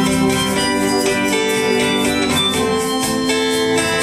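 Live folk-rock band playing an instrumental passage: steadily strummed acoustic guitar over sustained electronic keyboard chords.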